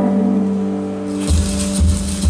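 Live band music: a sustained chord dies away, then about a second in the band comes back in with a cymbal wash and heavy low drum and bass hits.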